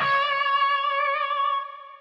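Roland Fantom workstation playing the final note of a performance as a lead sound. The note is struck once, held with a slight vibrato and rings out, fading away near the end.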